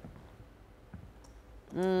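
A near-quiet pause with a few faint clicks, then near the end a loud, steady buzzer tone starts, holding one unchanging pitch.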